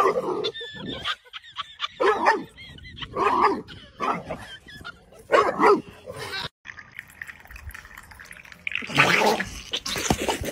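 A dog vocalising in a string of short pitched sounds, several of them spaced about a second apart.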